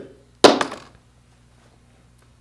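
A single sudden, loud smack about half a second in, dying away within half a second.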